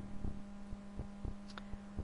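Steady low electrical hum in the narration recording, with a few faint soft thumps.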